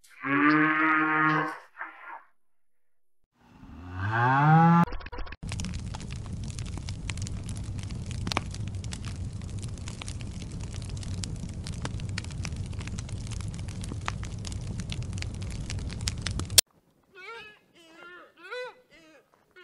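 Cattle mooing: a long, steady moo of about a second and a half, a brief one after it, and a second moo rising in pitch about four seconds in. Then about eleven seconds of steady low rumbling noise with crackles, which cuts off suddenly, and short wavering animal calls near the end.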